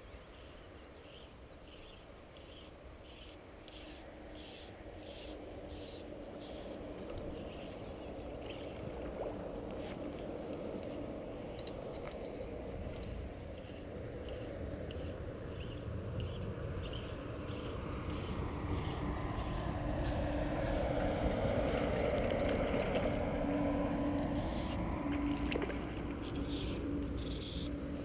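A motor vehicle passing at a distance, its engine noise slowly swelling over about twenty seconds with a steady low hum, peaking a little past two-thirds of the way in and then beginning to fade.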